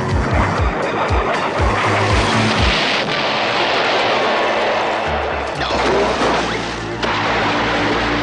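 Cartoon action music with rapid low drum hits over a loud rushing sound effect. A crash comes as a wooden plank breaks, then water splashes near the end.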